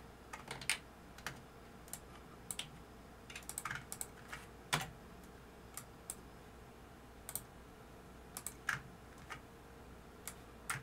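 Computer keyboard keys pressed one at a time at irregular intervals, with a quick run of several keystrokes around the middle and one sharper keystroke just after it.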